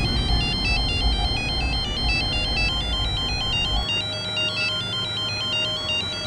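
A mobile phone ringing: a fast, high electronic ringtone melody of stepping beeps that plays without a break. A low rumble sits underneath and drops away about four seconds in.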